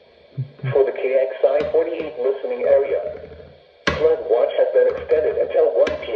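NOAA Weather Radio's computer-generated voice reading out a summary of watches, warnings and advisories, heard through the small speaker of a Midland weather alert radio. It pauses briefly about two-thirds of the way through, then starts again abruptly.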